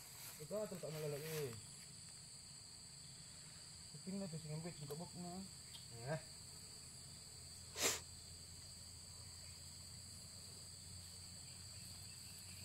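Insects chirring steadily in two constant high-pitched tones. A brief sharp noise cuts in once, about eight seconds in.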